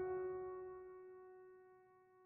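Background piano music: a single held chord fading away to near silence.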